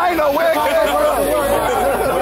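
Crowd chatter: several voices talking over one another at once, with no music playing.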